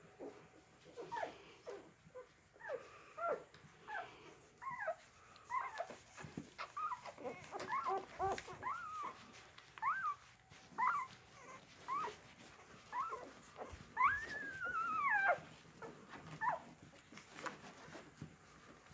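Golden retriever whimpering: a string of short high squeaks and whines, about one a second, with one longer wavering whine a little past halfway.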